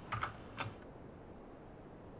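A few keystrokes on a computer keyboard, typing a word, stopping under a second in.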